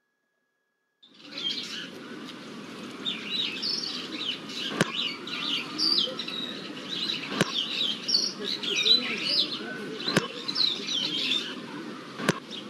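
Cartoon park ambience starting about a second in: birds chirping over a murmur of children's voices, with a sharp thump of a football every two to three seconds.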